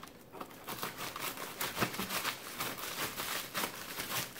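Scissors cutting open a plastic mailing bag: irregular crinkling of the plastic with small snips and clicks.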